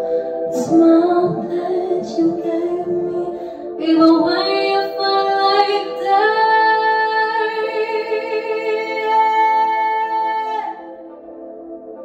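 A young girl singing into a handheld microphone over a steady, sustained ambient backing track. Her voice climbs into one long held note from about halfway through, which ends shortly before the close, leaving the backing alone and quieter.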